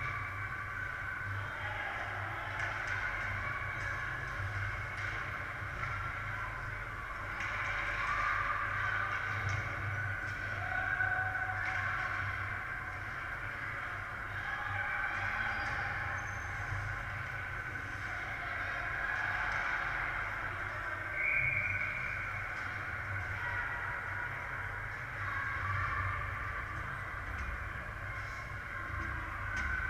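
Indoor ice rink during a youth hockey game: indistinct distant calls and voices echoing around the arena over a steady low hum.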